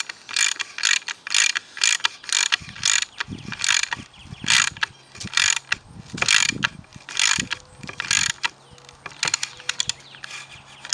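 Socket ratchet wrench clicking in a steady run of strokes, two to three a second, as it cranks a one-inch bolt down to draw an epoxied T-nut sleeve into a wooden board.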